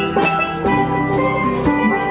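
Live steel band music: struck steel pan notes played over a drum kit with a steady cymbal beat and an electric bass.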